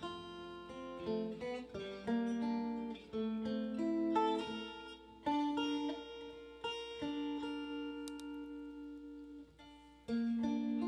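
Solo guitar, picked notes and chords each left to ring, played without singing; it dies away toward the end.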